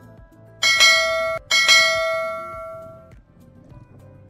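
Notification-bell sound effect of a subscribe-button animation: a bright bell struck twice, about half a second and a second and a half in, ringing out and fading by about three seconds.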